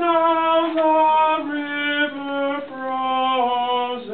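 A single voice sings a sustained line that steps down in pitch through about five held notes in small half-step descents: the measure 32 soprano passage being sung as a demonstration.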